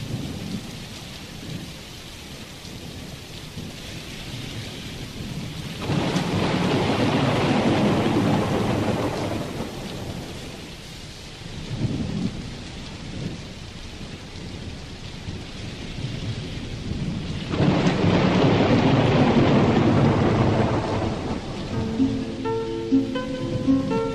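A rainstorm: steady rain with two long, loud rolls of thunder, one about six seconds in and one near the end, with smaller rumbles in between.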